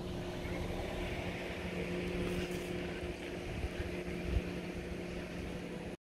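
A steady low motor hum under outdoor background noise, with irregular low rumbles of wind on the microphone.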